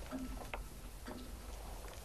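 Soft, regular ticking, about one tick a second.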